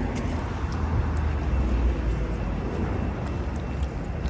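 Low rumble of a motor vehicle passing in the street, swelling in the middle and easing off, over general street noise.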